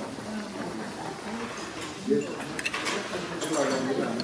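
Indistinct talking at a table, with a quick run of clinks from metal utensils against bowls and dishes in the second half.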